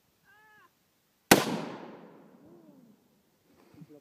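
A single shot from a Colt M4 TALO rifle in 5.56 mm, about a second in: a sharp crack whose echo trails off over about a second and a half.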